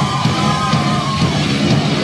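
Metalcore band playing loud live rock with guitar and drums, with yelling over it.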